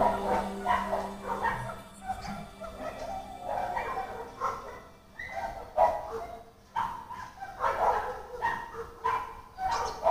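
A dog barking and yipping in short, irregular calls about once a second, while the last held note of the backing music fades out in the first two seconds.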